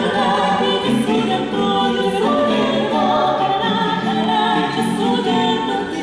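Small mixed vocal ensemble of women's and men's voices singing a cappella in harmony, several sustained voice parts moving together.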